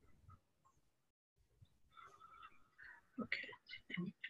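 Very quiet room sound with a few faint clicks, then faint, indistinct speech in the second half, a little louder near the end.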